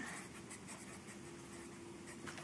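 Felt-tip marker writing on paper: faint scratching strokes over a steady low hum.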